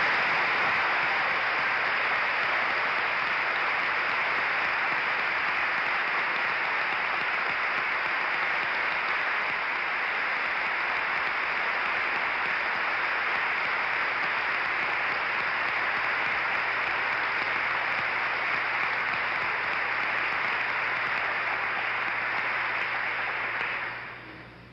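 Sustained applause from a large audience, steady throughout and dying away near the end.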